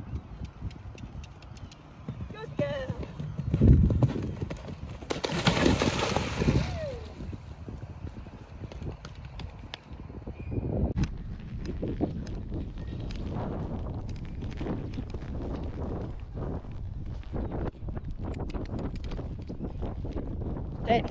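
A horse cantering on a sand arena surface, its hoofbeats coming as a dense run of short knocks through the second half. There is a loud thump about four seconds in, and voices are heard in the first half.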